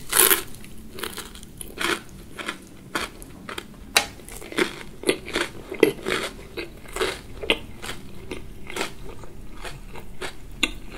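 A crisp bite into a fried fish cake, then crunchy chewing with many short, irregular crackles.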